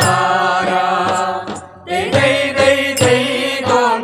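Malayalam folk song (nadanpattu): a voice singing a melody with instrumental accompaniment, in phrases with a brief pause about a second and a half in.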